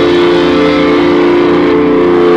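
Distorted electric guitars of a live hardcore punk band holding a sustained chord that rings steadily. The high cymbal wash drops away near the end.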